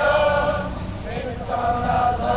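A group of voices singing together in unison, holding long notes.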